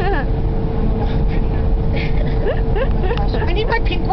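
Steady road and engine rumble inside a car's cabin at freeway speed. A woman laughs at the start, and there are short bursts of voice near the end.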